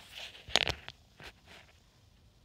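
A sheet of paper rustling as it is handled and held up: a short cluster of sharp rustles about half a second in, then a few faint ones.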